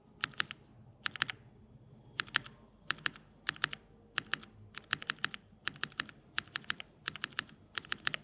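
Spacebar of a Spark 67 mechanical keyboard with Marshmallow switches, pressed repeatedly with one finger, about a dozen strokes at roughly one a second. Each stroke is a quick double click of press and release.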